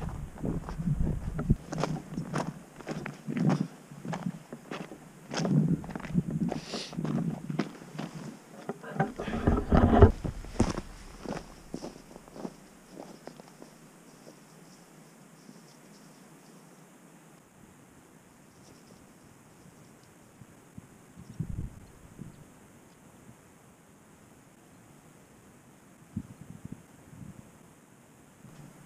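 Footsteps on rough ground, about two a second for roughly the first twelve seconds. They then give way to a quieter stretch with a few scattered faint thumps.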